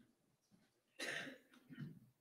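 A person coughing once, about a second in, against near-quiet room tone.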